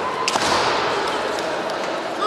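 Bamboo shinai strike in a kendo bout: two sharp cracks in quick succession about a third of a second in, over a held, high-pitched kiai shout.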